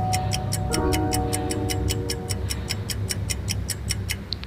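Quiz countdown-timer sound effect: rapid, evenly spaced clock-like ticking over a few held electronic notes.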